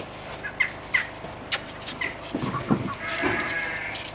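Sheep bleating, with short high chirps and small clicks in between and a longer call near the end.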